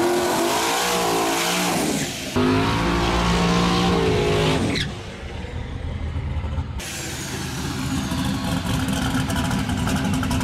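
Big-turbo Chevy pickup's engine revving hard through a smoky burnout and launch, its pitch rising and falling, then running farther off and quieter after about five seconds. The sound jumps abruptly at edit cuts about two seconds in and again near seven seconds.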